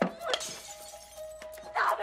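Dramatic background music holding one steady tone. A sharp hit at the start and another a moment later are followed by about a second of crashing, shattering noise. A loud voice cries out near the end.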